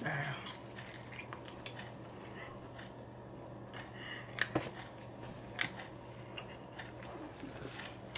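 A man biting into and chewing a slice of cheese pizza close to the microphone, with soft mouth clicks and smacks, over a steady low hum. Two sharper clicks stand out, one about four and a half seconds in and another about a second later.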